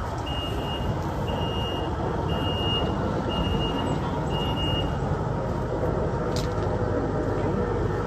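A brush chipper's engine running steadily. Over it a backup alarm beeps about once a second and stops about five seconds in, and there is a single sharp click late on.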